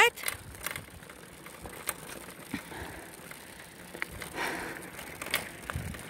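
A bicycle rolling over a gravel path: a steady low crunch of tyres on loose stones with scattered sharp clicks and rattles, and a brief louder rush about four and a half seconds in.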